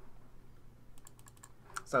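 A rapid run of light clicks at a computer, about half a dozen within a second, starting about a second in.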